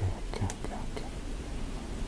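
A pause between speech: quiet room tone with a steady low hum and faint breathy sounds.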